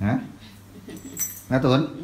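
A brief, light metallic jingle about a second in, between a woman's short spoken words.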